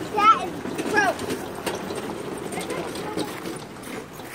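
People's voices: steady background chatter of visitors, with two short high-pitched voice sounds in the first second.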